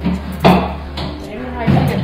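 A sharp clunk of metal about half a second in. Near the end a large commercial planetary dough mixer starts up and runs with a steady low hum.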